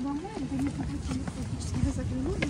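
Passers-by talking in a wavering voice close to the microphone, over a low wind rumble, with scattered footsteps on stone steps.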